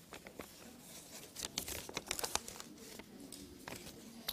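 Faint rustling and crinkling of paper and envelopes being handled by a roomful of people, with scattered small clicks and taps that come thickest around the middle.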